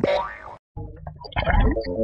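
A cartoon boing sound effect that fades out within half a second. After a brief silence, jingle music with deep bass comes in.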